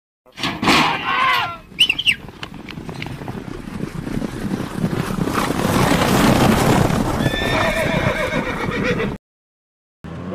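A horse whinnies with a falling neigh, gives a short high call, then galloping hoofbeats build up louder for several seconds before cutting off abruptly near the end.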